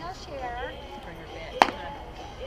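A single sharp crack of a baseball impact about one and a half seconds in, clearly the loudest thing here, over faint shouting from players.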